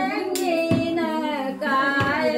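Women's voices singing a naming-ceremony cradle song in long, wavering notes. A single sharp click comes about a third of a second in.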